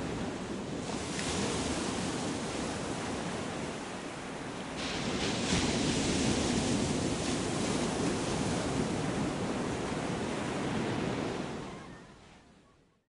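Ocean waves washing in: a steady rushing that swells about a second in and again about five seconds in, then fades away at the end.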